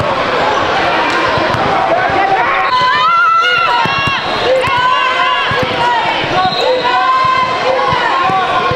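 A basketball bouncing repeatedly on a hardwood gym floor, with voices of players and spectators throughout.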